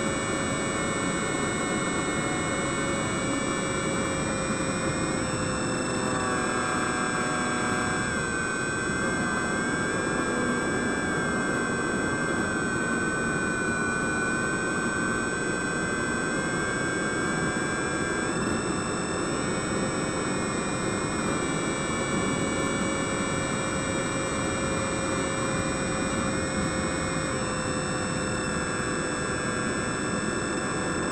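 Electric motor and propeller of a radio-controlled glider running steadily, heard from a camera on board over a constant rush of air. The whine holds several steady tones that sag slightly in pitch around the middle of the flight and then come back up.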